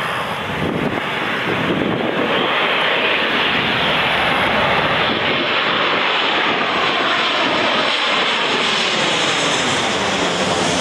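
Boeing 737-800 airliner's CFM56-7B turbofan engines on landing approach, passing low overhead: a loud, steady rush of jet noise that swells about two seconds in. Sweeping, shifting tones come in during the last few seconds as the aircraft goes over.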